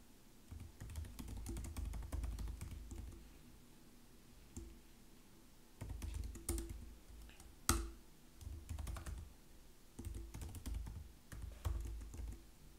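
Typing on a computer keyboard in quick bursts of keystrokes, with a lull of about two seconds in the middle and one sharper, louder key strike about two-thirds of the way through.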